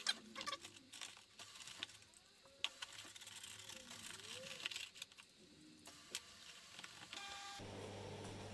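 Faint taps and small clicks of a paintbrush dabbing moss-flock mix into a terrain tile's holes, with a short electronic beep near the end.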